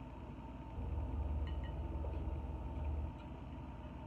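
A low, steady rumble that swells about a second in and drops back near the end, with a few faint clicks of fingers picking seafood from a glass bowl.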